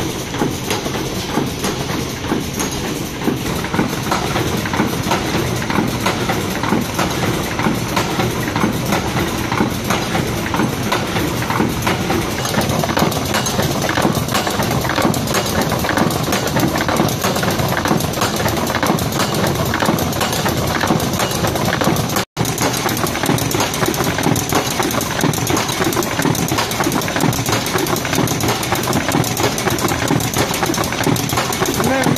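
XIESHUN XS-1450 folder gluer running, its belts, rollers and folding sections carrying corrugated board blanks through with a dense, steady mechanical clatter. The sound cuts out for an instant about two-thirds of the way through.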